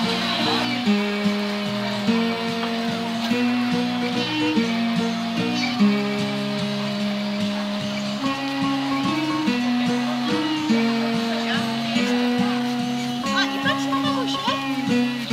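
Background instrumental music: a melody of long held notes moving step by step over a steady accompaniment.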